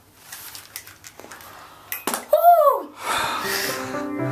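Rustling and a few clicks of studio headphones being pulled off, then a short voice whoop that rises and falls in pitch, the loudest sound. Music starts about three seconds in.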